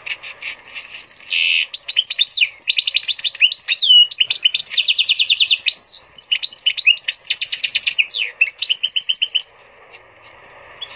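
Goldfinch × canary hybrid (pintagol) singing a long, fast song of rapid trills and twittering phrases, with a few brief pauses, stopping shortly before the end.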